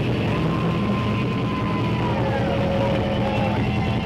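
Live metal band: distorted electric guitars and bass hold a low, droning chord while a higher sustained guitar note slides down in pitch about two and a half seconds in.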